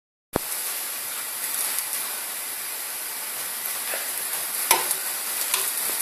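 Thin milk pancake batter sizzling in two hot frying pans on a gas hob, a steady high-pitched hiss. A sharp click at the very start, and a light tap about three-quarters of the way through.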